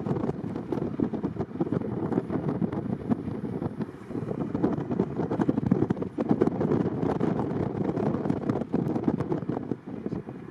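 Wind buffeting the microphone of a camera on a moving vehicle, a steady rough rush with rapid gusty flutter.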